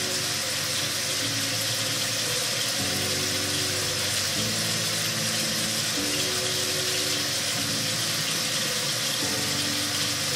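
Tap water running steadily into a sink.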